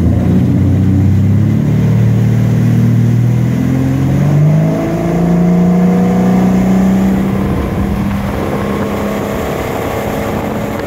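Malibu ski boat's inboard engine accelerating hard from a standing start to tow speed, its pitch rising over the first five seconds and then holding steady. Rushing water and spray from the hull run under it.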